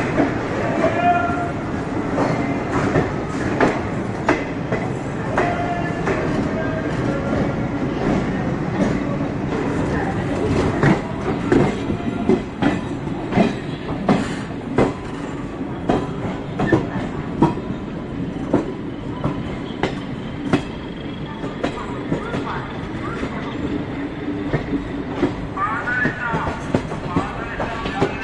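A passenger express train's wheels running over rail joints and points, with a steady rumble and a clatter of sharp clicks that come thick and fairly regular through the middle of the stretch.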